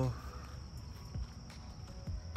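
Outdoor insect chorus, a steady high-pitched drone, over a low rumble.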